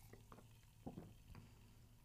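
Near silence, with a few faint short sounds of a person sipping and swallowing a drink from a can, the clearest about a second in.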